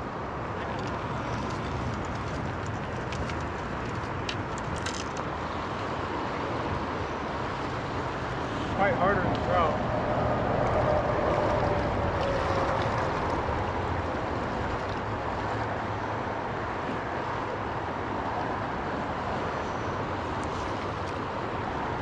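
Steady rush of fast river current. About nine seconds in, a brief wavering pitched sound rises over it.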